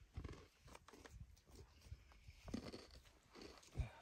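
Near silence with a few faint, scattered crunches and knocks, the clearest about two and a half seconds in and just before the end.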